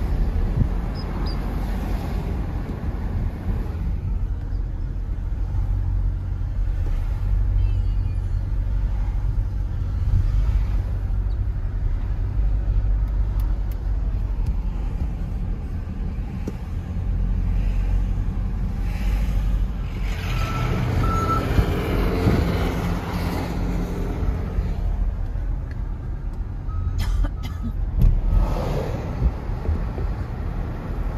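Steady low rumble of a car driving, heard from inside the car, with passing traffic growing louder about two-thirds of the way through. A few short high beeps sound briefly.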